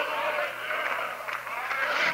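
Many voices of a church congregation overlapping in response during the preacher's pause, fading out about a second in, over a steady low hum from the old tape recording.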